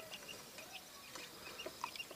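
Newly hatched Japanese quail chicks peeping: short, high chirps about three a second, with a few light taps.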